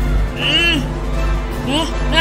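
Two short, wordless vocal cries from a cartoon character, each rising then falling in pitch, one about half a second in and one near the end, over a steady low drone of background music.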